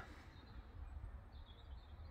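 Faint background noise: a low rumble throughout, with a brief faint high chirp about one and a half seconds in.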